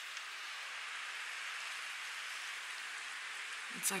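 Heavy thunderstorm rain pouring down steadily, with water running off a porch roof edge.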